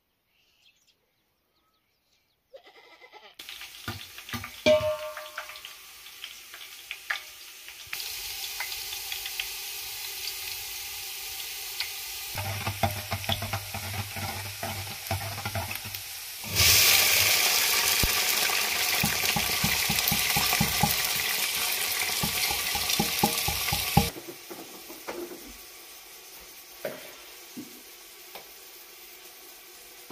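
Near silence at first, then a few knocks and clinks of metal pots over a steady frying hiss. About halfway through, a much louder sizzle starts abruptly as rice is poured into hot oil and fried onions in a metal pot. It drops off suddenly some seven seconds later, back to a quieter hiss.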